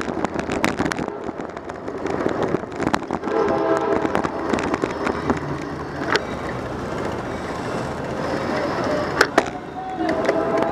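Road noise and rattling picked up by a camera mounted on a moving bicycle: a steady rumble and hiss full of small clicks and knocks from the bike and mount over the pavement. A brief pitched tone sounds about three to five seconds in.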